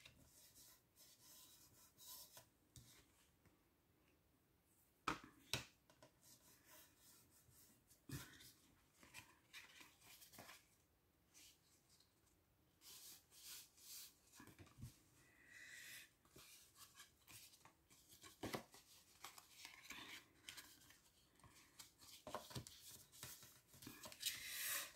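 Very faint handling of paper and card on a cutting mat: soft rustling and rubbing, with a few light taps and clicks, the clearest about five, eight and eighteen seconds in.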